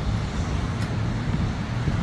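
Road traffic on a busy city street: cars driving past with a steady low rumble of engines and tyres.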